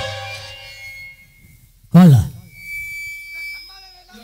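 Live folk-theatre stage sound through a public-address system. Held musical notes fade out, then about two seconds in there is one short loud cry that falls sharply in pitch, followed by a thin steady high tone.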